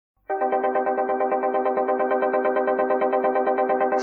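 Opening of a 1980s Bollywood disco song: after a brief silence, a synthesizer comes in with a steady chord pulsing in a fast, even rhythm.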